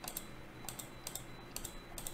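A handful of faint, sharp clicks from a computer mouse and keyboard used at a desk.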